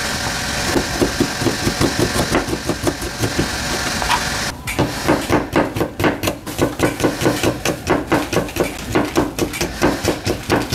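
Kitchen knife slicing shallots on a plastic cutting board: a quick, steady run of knife strokes, about four a second. A steady hiss in the background cuts out about halfway through.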